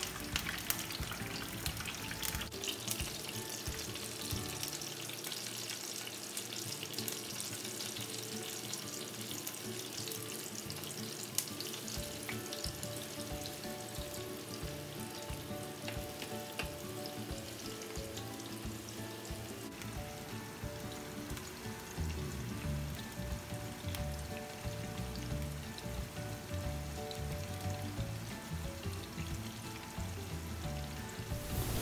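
Masala-coated fish pieces sizzling as they shallow-fry in hot oil in a frying pan, with a few light clicks in the first half as pieces are laid in.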